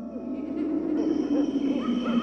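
Spooky intro soundscape fading in: a steady low drone with many short rising-and-falling calls over it, like owl hoots.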